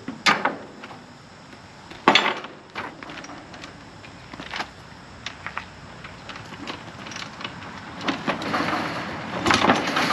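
Scattered knocks and clunks from a dirt bike on a trailer being strapped down and kicked over, with a louder run of kick-start strokes near the end; the engine does not catch.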